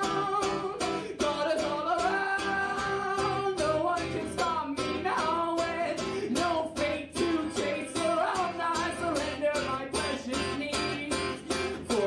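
A man singing live into a microphone while strumming a guitar in a steady rhythm.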